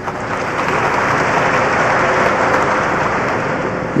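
Audience applauding, building up within the first second and then holding steady.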